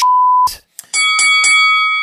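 A censor bleep, a steady beep tone lasting about half a second, then a boxing ring bell sound effect struck three times in quick succession about a second in, ringing on with a metallic clang.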